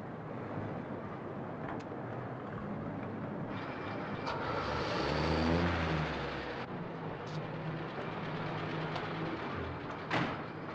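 A taxi's engine draws near and pulls up, loudest about halfway through, then runs at a steady idle, over a constant hiss of street noise.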